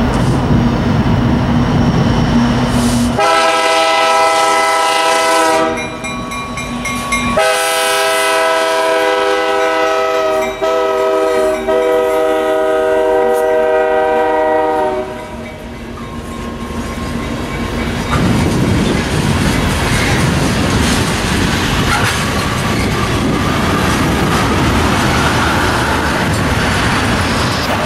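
Diesel freight locomotives pass with engines running and sound a multi-note air horn in two blasts: a short one of about two and a half seconds, then a longer one of about seven seconds. The tank cars that follow roll by with steady wheel and rail noise.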